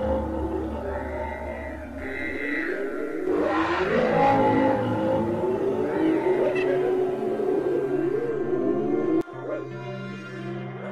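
Horror-film sound design: a monster's wavering, gliding cries layered over dark background music. The cries cut off abruptly near the end, leaving a low steady music drone.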